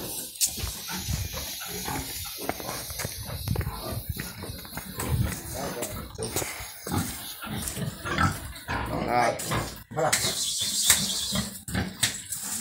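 Pigs grunting in short, irregular grunts throughout, with a brief high hiss near the end.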